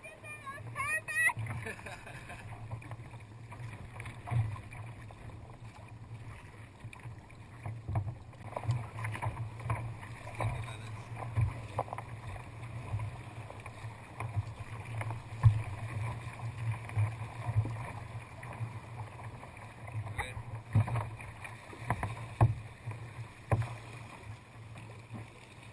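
Sea kayak paddling: paddle blades dipping and water splashing and slapping against the hull, with sharp splashes about once a second, over a steady low rumble of water on the kayak-mounted camera.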